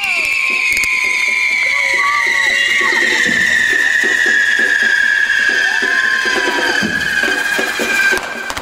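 Hand-held spark-fountain firework giving a loud, steady whistle that slowly falls in pitch, over a dense crackling hiss of burning sparks. Crowd voices are heard underneath.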